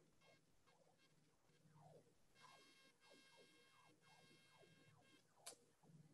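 Near silence: room tone in a pause between spoken slides. It carries a faint held tone a couple of seconds in, scattered faint falling tones, and a brief click near the end.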